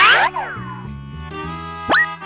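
Cartoon sound effects over children's background music: a loud falling boing-like glide at the start, then a quick rising swoop just before the end.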